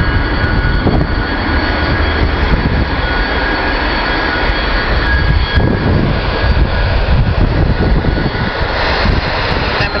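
Airbus A300 freighter's two jet engines running: a loud, steady rumble with a high whine over it.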